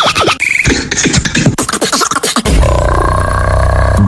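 Beatboxing: rapid percussive mouth clicks, snares and short swept effects. From about two and a half seconds in, a long, low buzzing bass note is held to the end.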